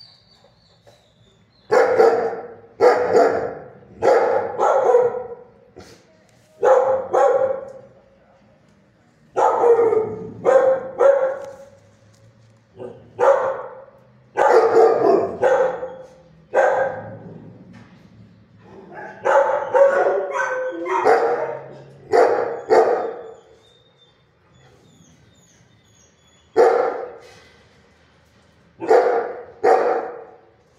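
Shelter dog barking loudly in repeated bouts of one to three barks with short pauses between, starting about two seconds in.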